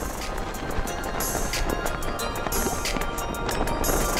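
Music with a steady percussive beat over held tones.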